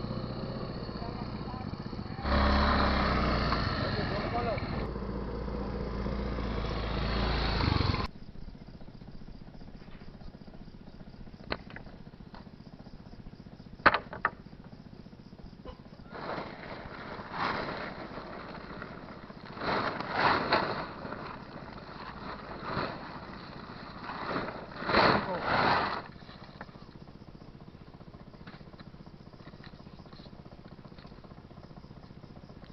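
A small motorcycle engine runs steadily for the first several seconds, then cuts off abruptly. A quieter stretch follows, with a couple of sharp clicks and a few short bursts of rustling noise.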